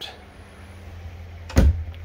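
An overhead wooden cabinet door shutting with a single thump about one and a half seconds in, over a steady low hum.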